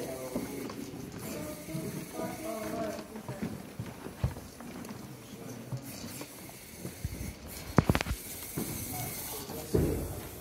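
Indistinct chatter of people talking in the background, clearest in the first few seconds. A few sharp clicks come about eight seconds in, and a knock near the end.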